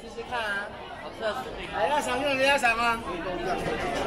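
People talking and chattering nearby, with one voice loudest about two seconds in.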